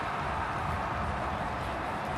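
Steady background noise of a football stadium's broadcast ambience, an even hiss with no distinct events.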